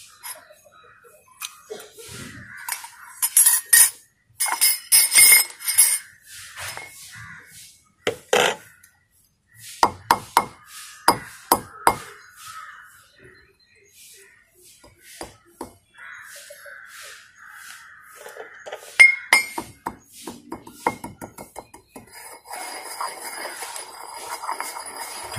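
Ceramic pestle pounding a lump of navasadar (ammonium chloride) in a ceramic mortar, a run of sharp clinks and knocks as the lump breaks up. In the second half it turns to a gritty scraping as the fragments are ground into powder.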